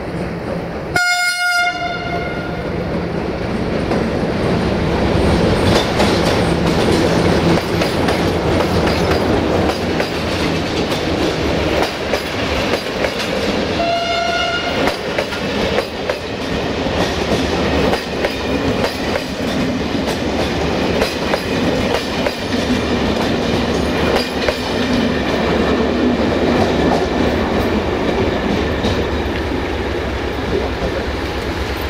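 Electroputere 060-DA Sulzer-engined diesel-electric locomotive sounding its horn twice, a blast about a second in and another about fourteen seconds in. Between the blasts it and its passenger coaches roll past with wheels clattering over the rail joints.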